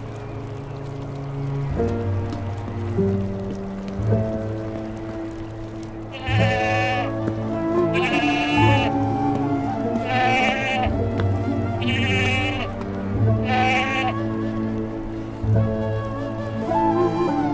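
A sheep bleating five times, about every two seconds, starting about six seconds in, over slow background music of held chords.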